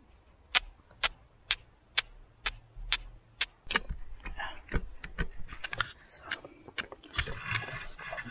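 Steel fire striker scraped down against a hand-held flint: a run of about eight sharp strikes, roughly two a second, then a few scattered, irregular clicks. These are strike attempts to throw sparks onto char cloth.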